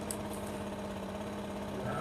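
A small motor running with a steady, unchanging hum.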